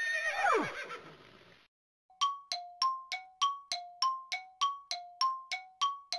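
A cartoon horse whinny, a wavering cry that falls steeply in pitch over about a second. It is followed, from about two seconds in, by a steady run of bright ringing dings alternating between two pitches, about three a second.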